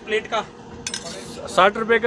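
Metal spoon and dishes clinking, with a brief sharp clatter about a second in, amid nearby voices.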